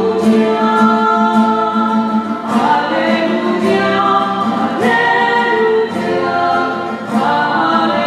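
Church choir singing a slow sacred song in Spanish, held notes in phrases that change about every two to three seconds. It comes between the reading and the Gospel, where the sung psalm or Gospel acclamation falls in the Mass.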